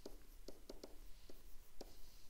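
Faint taps and light scratching of a stylus on a tablet screen as words are handwritten: about half a dozen small clicks.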